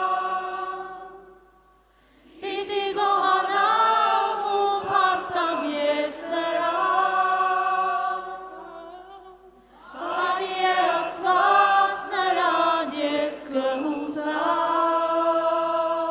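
A small mixed group of worship singers, women and a man, singing a worship song in Armenian together. They sing in long phrases, breaking off briefly about two seconds in and again near the ten-second mark.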